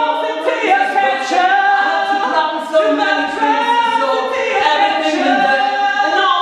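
A group of men and women singing together a cappella, unaccompanied, in long held notes that move from pitch to pitch.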